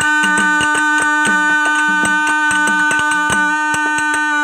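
Instrumental break in a dollina pada folk song: a steady held chord on a sustaining instrument, with hand drums and percussion beating a quick even rhythm of about five strokes a second.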